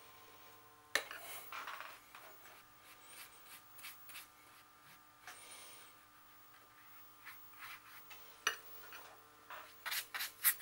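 Watercolour brush working: a sharp click of the brush against the plastic palette about a second in, then soft rubbing and swishing as the brush picks up paint and strokes across the paper, with a few light taps near the end.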